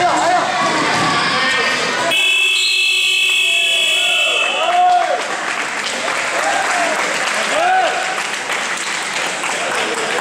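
Gym scoreboard buzzer sounding one steady, sustained tone for about three seconds, starting about two seconds in and cutting off sharply, marking the end of a period of play. Voices sound throughout.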